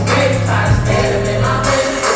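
Live hip-hop performance over a venue sound system: a backing track with a heavy bass line and a performer's vocals, with many voices in the crowd singing along.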